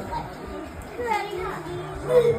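Indistinct voices of children at play, with some chatter in the room.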